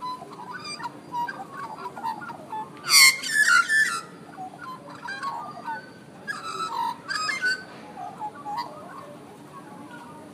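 Australian magpies singing: a run of short warbling, whistled calls that glide up and down, loudest in a dense stretch about three seconds in and again around six and a half seconds in.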